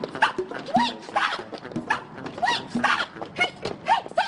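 A dog barking, a string of short barks about every half second.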